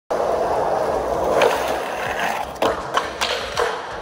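Skateboard wheels rolling over smooth concrete with a steady gritty rumble. In the second half this gives way to about four sharp wooden clacks and knocks of the board.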